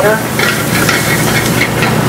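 Shallots sizzling as they sauté in butter in a stainless steel frying pan, with a metal spoon stirring and clicking against the pan.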